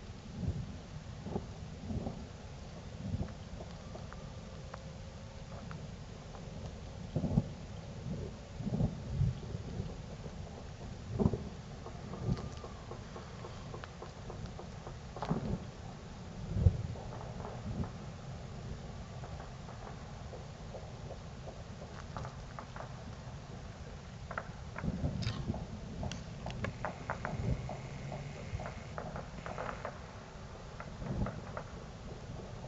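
Fireworks going off: scattered sharp pops and low booms at irregular intervals, with a thicker flurry of pops near the end.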